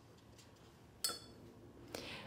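Mostly quiet, with a single light clink about halfway through that rings briefly at a high pitch: a paintbrush knocking against hard painting gear as the painter moves between paper and palette.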